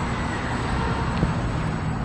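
Steady low rumble of traffic and background noise in a concrete parking garage, with a faint click about a second in.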